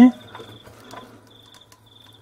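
Faint insect chirping: short high pulsed trills repeating about twice a second over a low steady hum.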